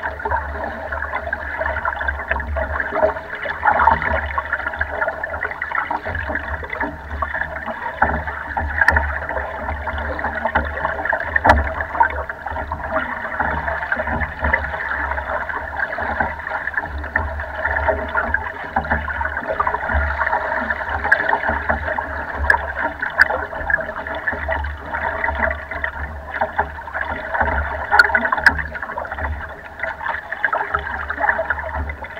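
Lake water sloshing and gurgling steadily against the side of a moving wooden boat's hull, heard close to the waterline, over a constant low rumble, with a few faint clicks here and there.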